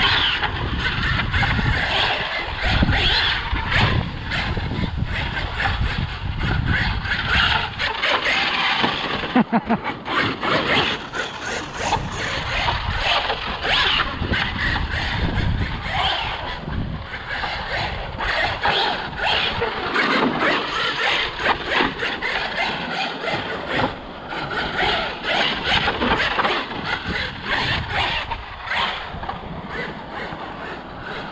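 Losi Super Baja Rey 2.0 electric RC desert truck being driven on a dirt track: its brushless motor and drivetrain running with tyre and dirt noise, rising and falling as it speeds up and slows down.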